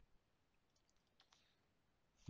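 Near silence, with a few faint computer mouse clicks in the second half.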